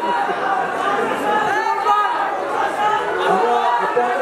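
Crowd chatter: many voices talking over one another in a large hall.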